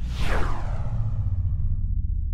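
Whoosh sound effect for an animated title logo: a sweep that falls in pitch just after the start and trails off over the next second and a half, over a steady low rumble.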